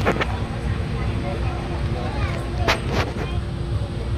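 Low, steady rumbling noise on a phone's microphone, with three sharp clicks, one right at the start and two close together near the three-second mark, over faint background voices.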